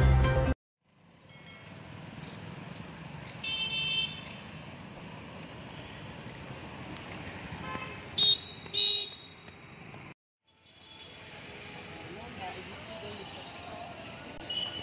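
Traffic noise on a quiet city street, with two short vehicle-horn toots about eight seconds in, the loudest sounds, and a fainter horn-like tone a few seconds earlier.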